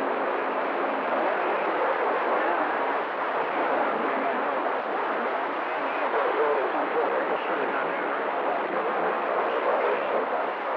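Steady radio static from a vintage tube communications receiver's speaker, the hiss of band noise on the shortwave/CB band, with faint garbled voices of distant stations buried in it.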